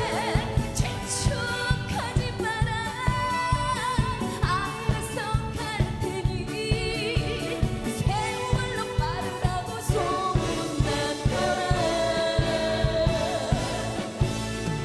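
A Korean trot song performed live: a woman sings the lead over backing singers and a band with brass, with a steady drum beat.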